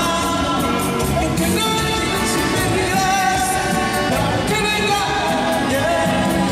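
Live band music led by a piano accordion, with drums and a singing voice.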